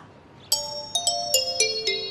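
Background music cue: bright, bell-like notes stepping down in pitch about four times a second, over a lower descending line, starting about half a second in.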